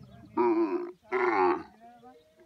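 Dromedary camels mating, with two loud groaning calls from a camel about half a second apart, over a low steady rumble.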